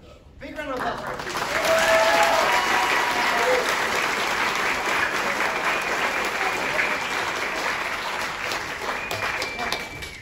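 Audience applauding, swelling up about half a second in and holding steady until it dies down near the end, with voices calling out over the clapping.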